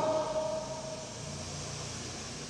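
The tail of a man's drawn-out word fades out over the first second and a half, leaving a steady low hum of room tone in the mosque hall.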